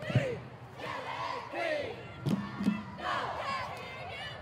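High-school cheerleading squad shouting a cheer together in short, loud phrases, many voices at once. Two sharp thumps come a little past the middle.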